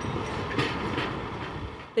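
TTC subway train on an outdoor elevated track, a steady rushing rail noise that fades toward the end.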